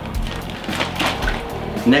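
Plastic zip-top bag of brine crinkling and rustling as it is handled and opened, over steady background music.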